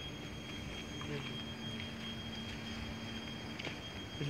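A constant thin high-pitched whine over a steady low hum and faint outdoor background, with a few faint ticks.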